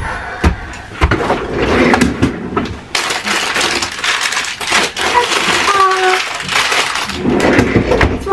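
Rustling and crinkling of plastic packaging with scattered clicks and knocks, as of a bag of chocolate chips being handled, getting denser about three seconds in; a child's short vocal sound about midway.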